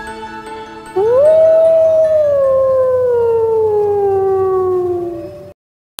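A wolf howl over the tail end of the music: one long howl that rises quickly about a second in, then slowly falls in pitch and cuts off suddenly near the end.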